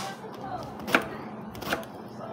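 Knife slicing through peeled patola (luffa gourd) and striking a plastic cutting board: two sharp chops, one about a second in and a second near the end.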